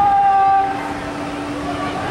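A horn sounding in steady, held tones, several notes at once: a higher chord for the first half second or so, then a lower note held on.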